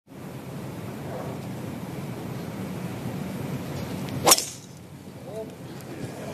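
A golf driver striking the ball off the tee: one sharp crack about four seconds in, over a low murmur from the gallery.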